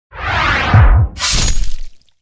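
Intro sound effect for an animated logo reveal. A swelling whoosh with two deep booms comes first, then a bright crashing, shattering hit that cuts off just before two seconds.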